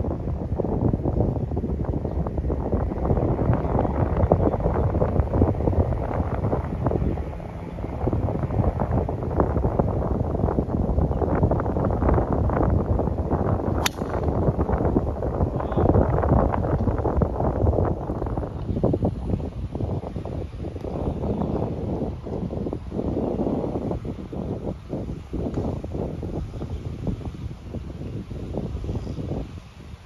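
Wind noise on the microphone, rising and falling. About halfway through comes a single sharp click: a driver striking a golf ball off the tee.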